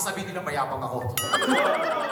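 Laughter, then about a second in a sudden high whinny like a horse's neigh, wavering quickly up and down in pitch.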